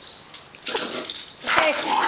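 Small dogs squabbling over food: a short snarling, yapping outburst that starts about a third of the way in and is loudest near the end.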